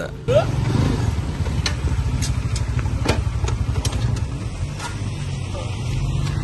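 Small motor scooter's engine running steadily at low speed as it approaches, with a few faint clicks over it.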